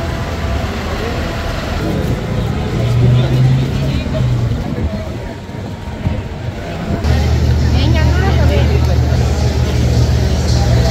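Busy street ambience: people talking in the background over a steady low rumble of motor traffic, which gets louder about seven seconds in.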